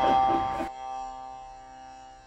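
A single plucked string note, sitar-like, ringing with many overtones and slowly fading, with laughter over its first moment.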